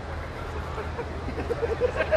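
Low steady hum from the stage sound system under faint room murmur; in the second half a man chuckles softly in a short run of quick laughing syllables.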